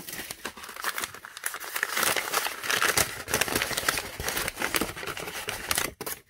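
Brown wrapping paper crinkling and rustling continuously as it is handled and unwrapped from a bullet mold half.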